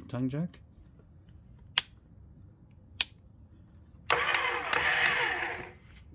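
Two sharp clicks, then a 12-volt electric trailer tongue jack's motor runs for under two seconds and stops, powered through the newly fitted 24 V-to-12 V DC converter.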